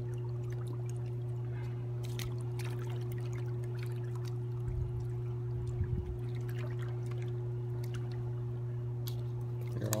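Shallow river water trickling and lapping against the shoreline rocks over a steady low hum, with a few small knocks and splashes about five to six seconds in.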